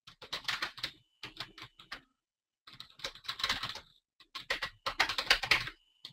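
Typing on a computer keyboard in four quick runs of keystrokes with short pauses between them.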